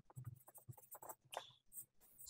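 Marker pen writing on a paper pad: a run of short, faint scratching strokes as letters are written and a line is drawn.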